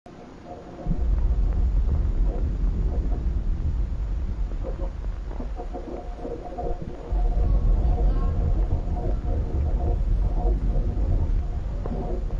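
A deep, continuous rumble that starts about a second in and swells again about halfway through, with muffled, garbled voice-like sounds over it.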